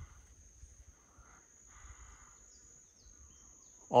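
Faint outdoor ambience: a steady, high-pitched insect trill holding one tone throughout, over a low rumble of wind. A man's voice starts at the very end.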